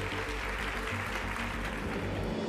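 Audience applauding, a dense patter of clapping that thins toward the end, over background music.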